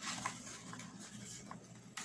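Faint handling noise of fingers picking at and peeling a paper sticker off a workbook sticker sheet, with a few light ticks.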